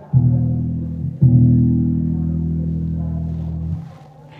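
The low E string of a 5-string electric bass plucked twice with the fingers to show its tuning. The first note is cut short after about a second; the second rings for about two and a half seconds before it is damped.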